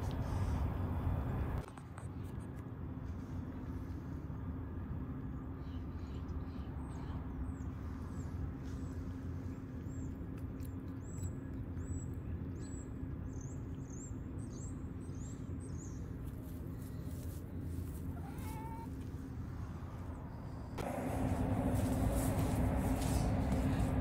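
A domestic cat meowing, one rising-and-falling call about three-quarters of the way through, over a steady low outdoor hum with faint high chirps.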